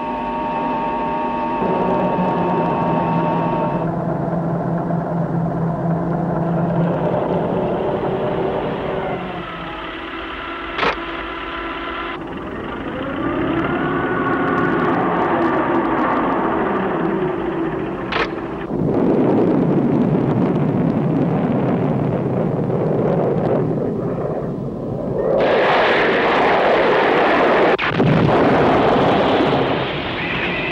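Film soundtrack of electronic science-fiction tones and drones, with a sharp click about 11 s in, another near 18 s, and a gliding tone between them. From about 19 s a loud, dense rushing noise of battle sound effects takes over.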